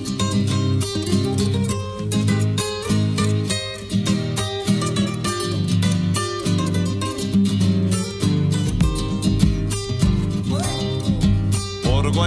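Instrumental introduction of an Argentine folk zamba: acoustic guitars plucked and strummed in a lilting rhythm. Deeper bass notes join about two-thirds of the way through.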